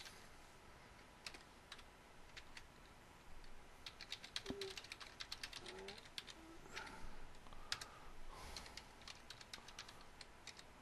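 Faint computer keyboard typing: a few scattered keystrokes, then quicker runs of keys from about three seconds in, as an email address and then a password are typed.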